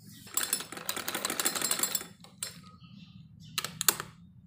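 Domestic sewing machine stitching in a fast run of needle strokes for about a second and a half, then stopping, with a few separate clicks after.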